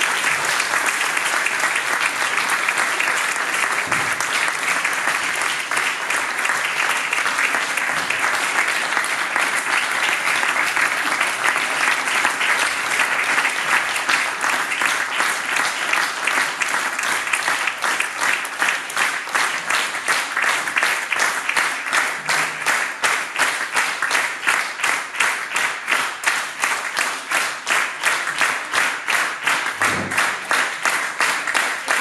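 Audience applauding, a dense even clapping that in the second half falls into rhythmic clapping in unison.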